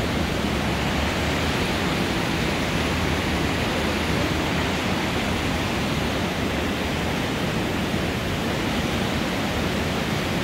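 River water pouring over a weir and churning in the white water below it: a steady, unbroken rush.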